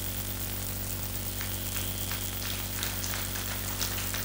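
Steady low electrical mains hum with a hiss and a few faint crackles, the background noise of a public-address microphone system between spoken phrases.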